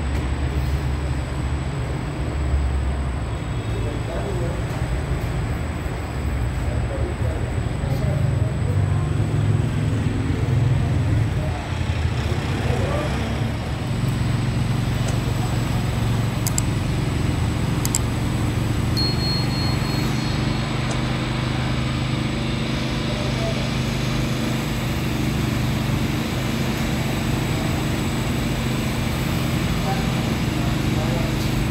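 Bakery workroom noise: a steady low machine hum with indistinct voices in the background.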